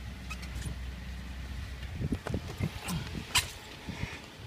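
A low steady hum that stops about halfway, then scattered knocks, clicks and steps as a person climbs out of a van onto wet pavement.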